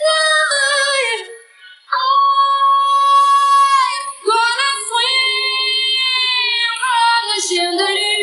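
High female lead vocal of a pop song in a vocal chillout remix, singing long held high notes with a brief break about a second and a half in, with little accompaniment audible under it.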